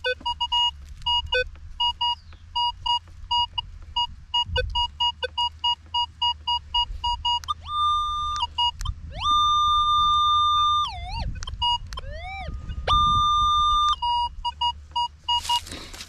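Metal detector sounding a target: short beeps, many of them, as the coil sweeps over a dug hole, then three longer held tones a little higher in pitch, broken by a few swooping glides. It is signalling a target that is still in the hole and is deeper than first thought.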